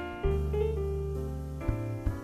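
Grand piano playing jazz chords, struck about a quarter-second in and again near the end, with deep bass notes ringing beneath them.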